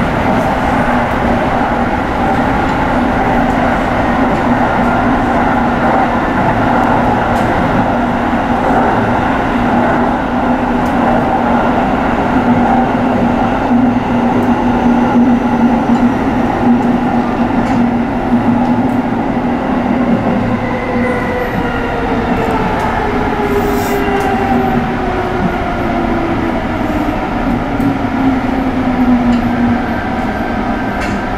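Tsukuba Express electric train running at speed on elevated track, heard from inside the cab: steady rolling and running noise with a constant hum, and over the last ten seconds a whine that slides down in pitch.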